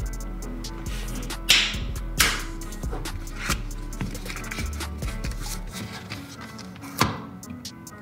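Background music, with a few sharp rasps and scrapes from a paper-and-cardboard box being handled and opened, the loudest about a second and a half in and again near the end.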